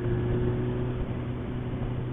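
Motorcycle engine running at a steady cruise, holding one even pitch, under a haze of wind and road noise.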